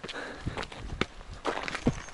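Footsteps on a rough stone path: a string of irregular footfalls, roughly two a second.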